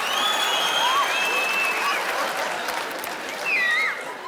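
Theatre audience applauding and laughing, fading after about two and a half seconds; a short call rises near the end.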